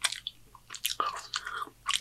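A person chewing food close to the microphone: a string of irregular wet clicks and smacks from the mouth.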